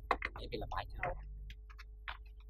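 A few quick murmured words, then faint, evenly spaced ticks of a clock starting about a second and a half in.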